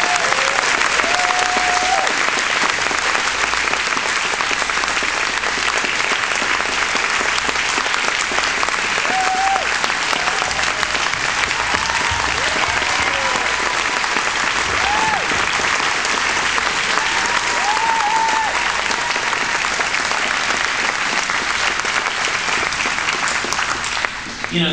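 Audience applauding steadily and loudly in a hall, with a few voices calling out over the clapping.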